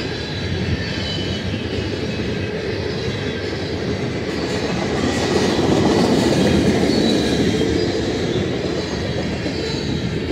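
Loaded covered hopper grain cars rolling past: a steady rumble of steel wheels on rail with a faint high wheel squeal, growing a little louder partway through as the last cars of the train go by.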